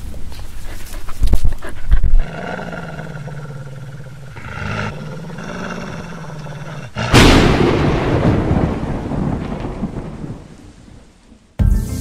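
Thunderstorm sound effects for a channel intro: sharp cracks in the first two seconds, a low droning pitched sound for about five seconds, then a loud thunderclap about seven seconds in that rumbles away over some four seconds. Music comes in just before the end.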